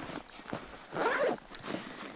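A backpack zipper being pulled along the top lid pocket of a Condor Venture Pack, a short rasp about a second in.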